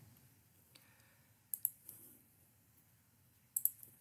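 A few short computer mouse clicks, in pairs about one and a half seconds in and again near the end, with near silence between them.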